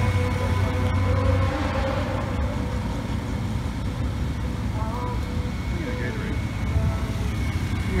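Steady low rumble of a vehicle engine idling, with a few thin steady whines over it and faint voices in the background.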